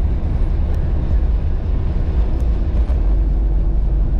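Steady low rumble of a Jeep Cherokee XJ's engine and tyres on a snow-covered road, heard from inside the cab.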